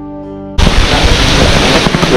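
Soft background music with long held notes cuts off suddenly about half a second in. It gives way to loud, steady rushing noise from the live recording, like wind on the microphone or running water.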